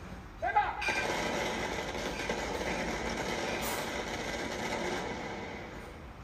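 A short shouted parade command, then a running volley of blank rifle fire rippling down the ranks of a rifle party in a feu de joie. It starts suddenly, runs on as a dense crackle for about four seconds and fades out near the end.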